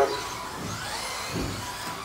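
Electric 4WD RC racing buggies' motors whining around the track, one rising in pitch about half a second in as a buggy accelerates.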